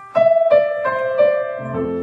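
Grand piano played: a slow melody of single notes struck about a third of a second apart, with low bass notes coming in near the end.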